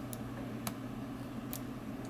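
A few faint metal ticks from a flat-tipped hook pick working the pins of a small seven-pin lock held under tension, over a steady low hum.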